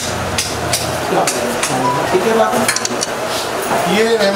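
Overlapping voices of people crowded close together, broken by several sharp clicks and light knocks.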